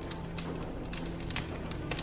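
Sharp, irregular popping and crackling, several pops a second, from a window air conditioner just before it catches fire, over a low steady drone.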